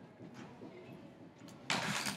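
Quiet room tone, then a brief loud burst of noise near the end.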